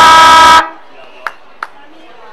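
Football ground's siren sounding one long, steady horn blast that cuts off abruptly just over half a second in, signalling the end of the quarter. Two short, sharp knocks follow about a second later.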